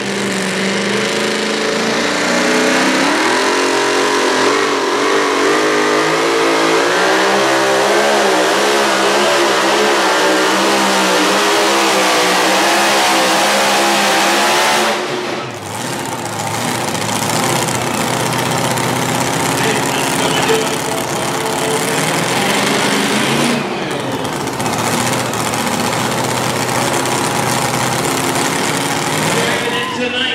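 Supercharged engine of a super modified two-wheel-drive pulling truck at full throttle dragging a weight-transfer sled. Its pitch climbs over the first few seconds, then wavers up and down as the run goes on, and drops off sharply about halfway through. For the rest it runs at a lower, steadier level.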